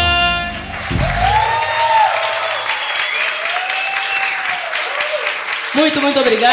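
A band's final held chord rings and dies away within the first second, then an audience applauds, with voices calling out over the clapping.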